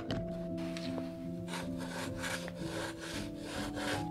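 Steel dip pen nib scratching across paper in a quick run of short looping strokes, faint music underneath. The paper is a cheap, unbranded sheet that lets the ink feather.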